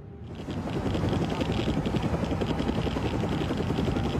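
A loud, dense mechanical rumble, from the drama's soundtrack, starts abruptly a moment in and holds steady.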